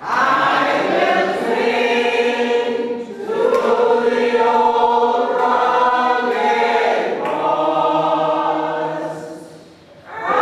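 A choir singing in long, held phrases; one phrase gives way to the next about three seconds in, and the singing fades out near the end.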